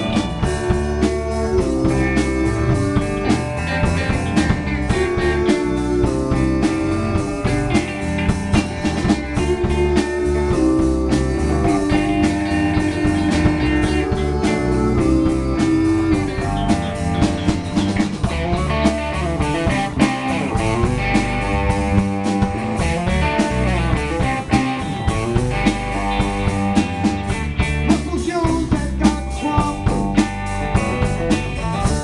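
Live blues-rock band playing: electric guitars over electric bass and a Premier drum kit, with long held, bending notes on top.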